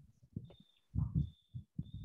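Three faint, low, muffled thumps, a little over half a second apart, with a thin high tone coming and going.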